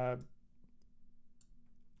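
A spoken word trails off, then near silence with a couple of faint clicks at the computer, about a second apart, as a line is selected in the code editor.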